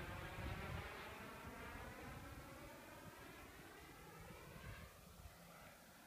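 Radio-controlled Ultraflash model jet's turbine heard from the ground as it passes and moves away: a faint whine with several tones, falling in pitch and fading.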